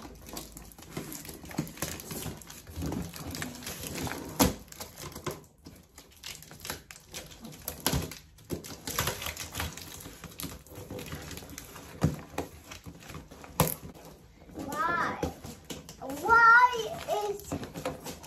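Cardboard box being handled: scattered rustles, taps and sharp clicks as hands work on its surface. Near the end a young child's voice sounds twice, the loudest part.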